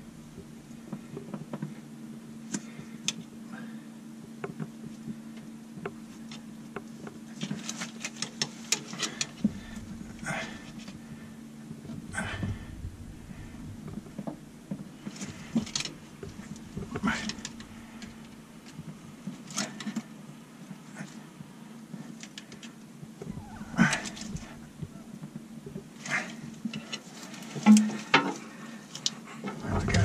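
Scattered small clicks and scrapes of a metal rod working greased packing rope into a narrowboat's stern gland around the propeller shaft, in short clusters, over a steady low hum.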